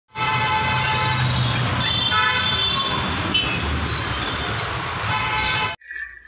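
Road traffic with vehicle horns honking: several horns of different pitches sound and overlap over engine and road noise. It all cuts off suddenly near the end.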